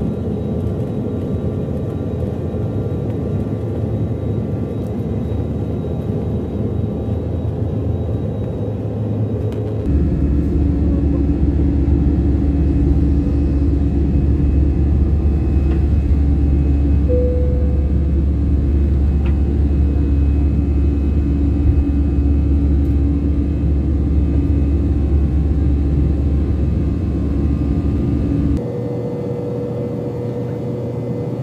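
Jet airliner's turbofan engines heard from inside the cabin during takeoff and climb-out, a loud steady rumble with a steady hum. It steps up abruptly about ten seconds in and drops back suddenly shortly before the end.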